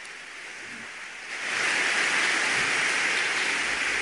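Audience applauding: softer at first, then swelling to a steady, louder level a little over a second in.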